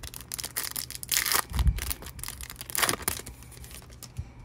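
A foil trading-card pack wrapper being torn open and crinkled by hand, in a few crackly bursts with a soft bump in the middle.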